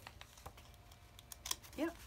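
Faint paper handling: a few light clicks and taps with a soft rustle as fingers press a small paper tab onto the edge of a journal page.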